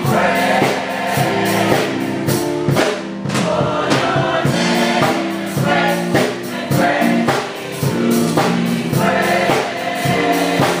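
Gospel choir singing in harmony, accompanied by keyboard and a drum kit keeping a steady beat.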